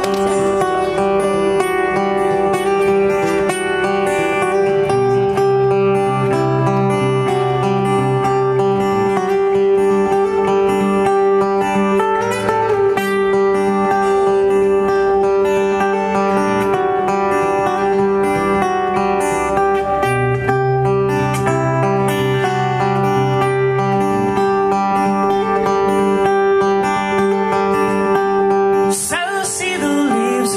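A solo acoustic guitar plays a slow instrumental introduction: a repeating pattern with notes left ringing over bass notes that change every few seconds. A singing voice comes in near the end.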